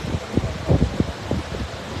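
A few soft low thumps over a steady low rumble, in a pause between spoken words.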